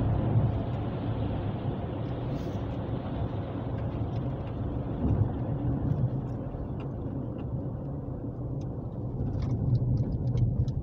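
Car cabin noise at road speed: a steady low rumble of engine and tyres on the road. The higher hiss dies away in the second half as the car slows on a freeway off-ramp.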